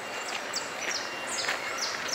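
Birds chirping in the trees: a run of short, high notes that each fall quickly in pitch, about three a second, over steady outdoor background noise.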